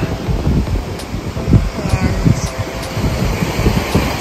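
Wind buffeting the microphone in loud, uneven gusts, with the surf of a rough sea breaking on the shore beneath it.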